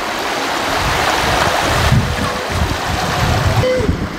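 Creek water rushing over rocks in a shallow riffle: a steady wash that grows a little louder, with uneven low rumbling beneath it.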